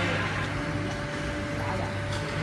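Horizontal ribbon blender running: its motor hums steadily with a faint constant tone while the ribbon agitator turns through powder.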